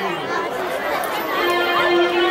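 Voices talking, with overlapping chatter.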